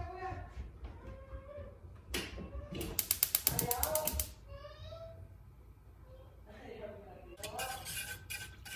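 A gas stove's spark igniter ticks rapidly as the burner is lit: a single click, then a fast run of about ten clicks a second for just over a second.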